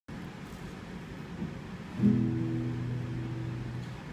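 Classical guitar: a chord is struck about halfway through and left ringing, after a couple of seconds of low handling noise.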